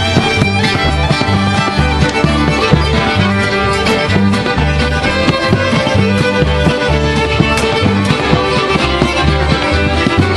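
Acoustic bluegrass string band playing a tune, with a fiddle lead over strummed guitar and picked banjo. An upright bass plucks a steady beat underneath.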